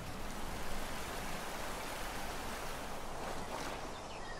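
Steady, even rushing noise of flowing water, like a stream, with no music or voice over it.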